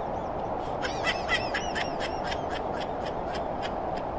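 Someone laughing in a quick run of short bursts, over a steady low background rush.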